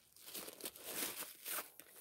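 Crinkling of a plastic-wrapped diaper pack and rustling of a sheer fabric gift bag as the pack is pushed into the bag, in several short bursts.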